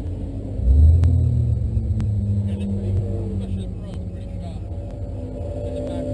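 A 2009 Mustang GT's 4.6-litre V8 idling with the car at a standstill, heard from inside the cabin. About a second in, the low engine sound swells, and its pitch then eases slowly back down.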